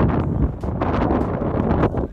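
Strong wind buffeting the microphone: a loud, gusty low noise that swells and dips.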